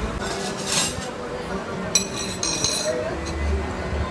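Metal fork and spoon scraping and clinking against a dinner plate while food is picked up. One sharp clink about two seconds in rings on briefly.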